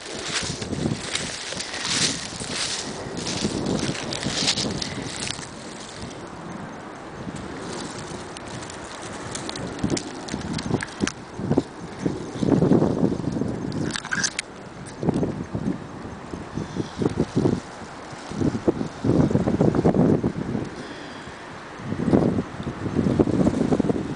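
Wind gusting on the microphone in uneven surges, with rustling and crackling of low shrubs and dry leaf litter as the camera is moved through the brush, most crackly in the first few seconds.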